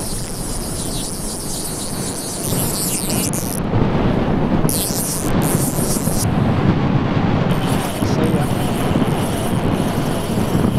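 Wind buffeting the microphone: a loud, rough rumbling rush that gets stronger about a third of the way in.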